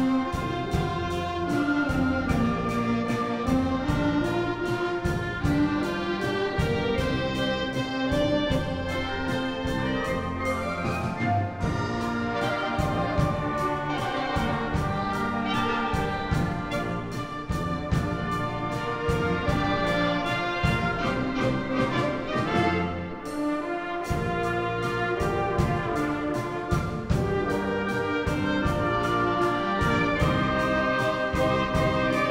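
A children's concert band playing a piece together: clarinets, flutes, bassoons and brass over percussion, with a steady beat.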